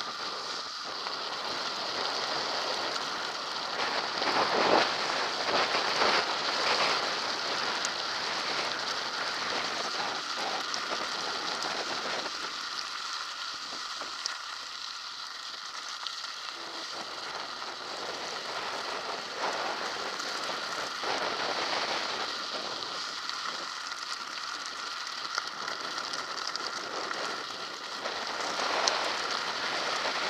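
Mountain bike tyres rolling fast over a loose gravel track: a continuous crunching hiss scattered with small stone clicks. It thins out for a few seconds in the middle, then picks up again.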